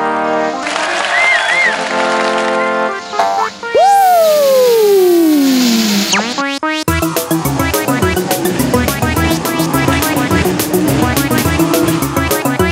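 Cartoon background music: sustained synthesizer chords, then one long falling whistle-like glide about four seconds in, and from about seven seconds a rhythmic tune.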